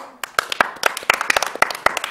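A small group clapping their hands: quick, uneven claps that overlap, with faint voices underneath.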